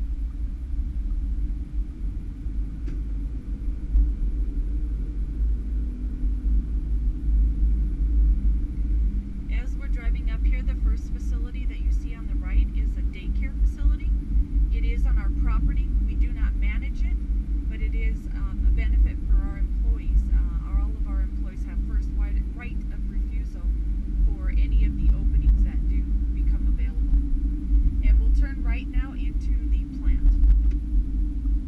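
Steady low rumble of a car being driven, heard from inside the cabin, with indistinct talking coming and going over it from about ten seconds in.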